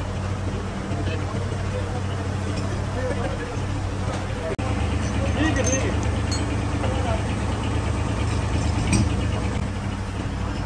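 An engine idling steadily close by, a low even hum, with faint voices behind it. The sound cuts out for an instant about halfway through and then carries on.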